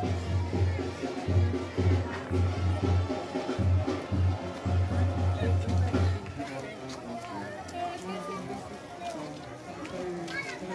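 A tamborazo brass band playing, with a pulsing low bass beat under the horns and background voices of a crowd. The bass beat stops and the music drops back about six seconds in, leaving mostly the crowd's voices.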